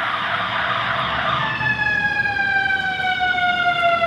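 Emergency vehicle siren on a street. A burst of hiss fills about the first second and a half, then the siren's wail slides slowly down in pitch.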